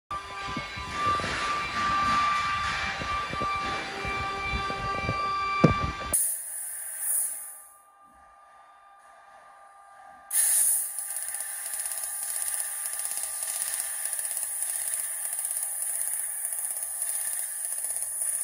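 Acctek fiber laser cutting machine: first a steady whine of several tones over workshop noise with one sharp knock, then, after a short lull, the cutting head's high hiss starts up about ten seconds in and runs on with a fast, even flutter as it flying-cuts holes in sheet metal.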